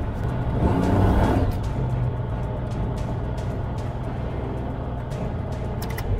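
Ultralight's propeller engine running at low taxi power, swelling briefly about a second in, with background music laid over it.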